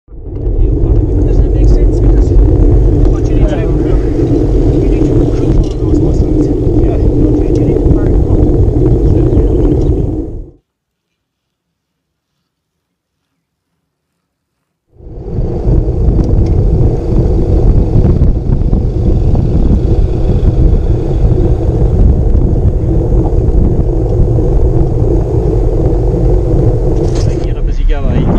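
Wind buffeting a bicycle-mounted camera's microphone while riding: loud, steady wind noise, broken by a few seconds of dead silence about ten seconds in before it returns.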